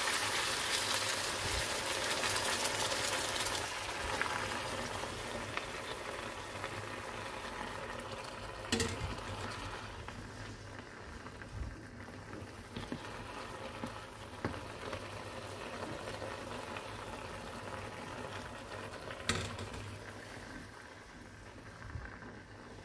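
Rice and chopped onions in oil and water bubbling and sizzling in a hot frying pan. The hiss is loudest at first and slowly dies down as it settles to a boil. Two brief knocks of the wooden spoon against the pan.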